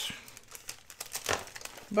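Clear plastic stamp-set packaging crinkling and rustling as it is handled, in a few short bursts, the loudest a little past a second in.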